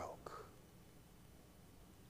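The tail end of a man's spoken word in the first half-second, then near silence: room tone.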